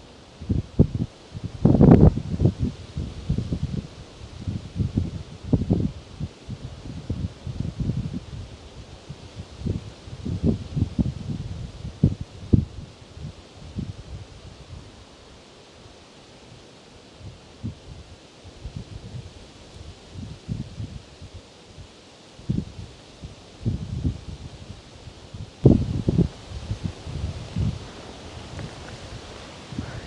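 Tree leaves rustling in gusty wind close to the microphone, with irregular low buffeting that swells and fades, strongest near the start and again near the end.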